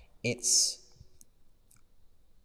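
A man's voice saying "it's", drawing out the hissing s, then a quiet pause broken by a few faint clicks.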